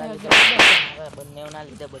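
Two sharp, loud cracks about a third of a second apart, near the start, followed by boys talking.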